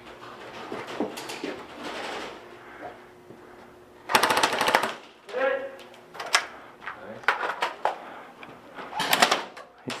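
Airsoft electric guns firing two short full-auto bursts, a rapid even string of clicking shots: a longer burst about four seconds in and a brief one near the end. Voices are heard between the bursts.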